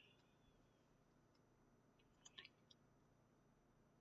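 Near silence, with a few faint computer mouse clicks a little over two seconds in.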